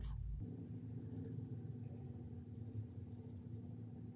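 Quiet room tone with a low steady hum, and faint light scratchy sounds of a makeup brush being worked over the skin of the face.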